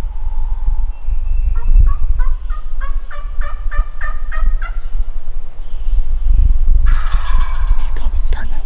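Wild turkey calling: a run of evenly spaced notes, about four a second, for some three seconds, then a wild turkey gobbler gobbling loudly near the end.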